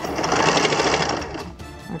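Sewing machine stitching in one run of about a second and a half, then stopping.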